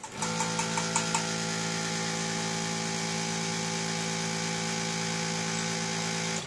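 The suction pump of an egg-retrieval (follicle aspiration) setup switches on at the start and runs with a steady electric hum, with a few faint ticks in the first second. It is drawing gentle suction through the aspirating needle, pulling follicular fluid into a collection tube as the follicle collapses.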